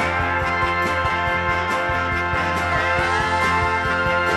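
Band music with no singing: a steel guitar slides between notes over a steady drum beat and bass.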